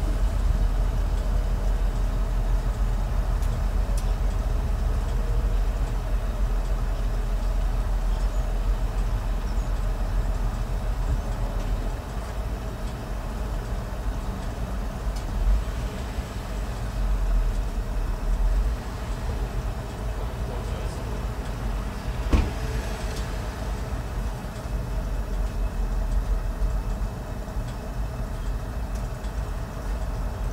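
Car engine idling, heard from inside the stationary car's cabin as a steady low rumble that eases about twelve seconds in; a single sharp click a little over twenty seconds in.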